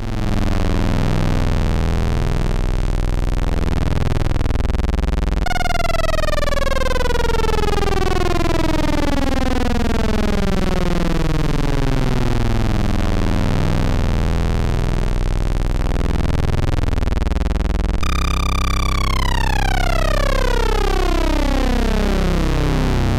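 Eurorack modular synthesizer patch (Rossum Trident oscillator through a Klavis Mixwitch) playing a low, buzzy, steady note while its wave shape is swept very slowly. This is an extra slow wave-shape sweep being recorded as wavetable material. A falling sweep of overtones starts over about five seconds in and again near the end, where it holds briefly and then falls.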